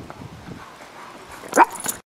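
Small dog giving a short, sharp yelp about one and a half seconds in, followed by a smaller yelp. The sound cuts off abruptly.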